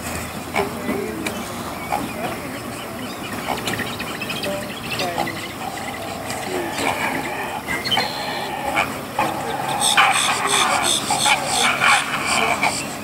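Birds calling: a mix of short chirps and squawks, with a burst of rapid, repeated chattering calls about ten seconds in.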